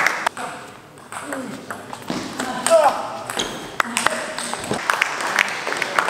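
Table tennis balls clicking irregularly off tables and bats, with the hall's reverberation and voices in the background.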